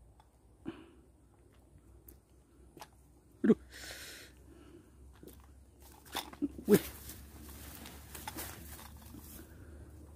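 A just-caught tilapia flapping in the grass and being grabbed by a gloved hand: rustling with a few scattered knocks, the loudest about three and a half seconds in, and a brief hiss soon after.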